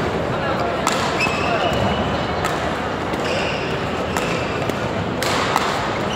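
Badminton play in a large, echoing hall: sharp racket-on-shuttlecock hits a second or two apart and shoe squeaks on the court, over steady voices and chatter from the surrounding courts.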